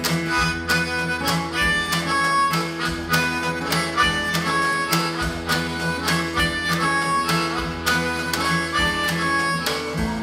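Harmonica playing sustained blues lines over a strummed acoustic guitar with a steady beat, in an instrumental passage with no singing.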